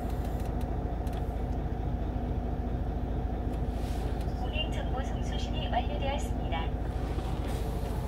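Hyundai Universe coach's engine idling steadily, heard inside the cabin from the driver's seat, with a faint voice briefly in the middle.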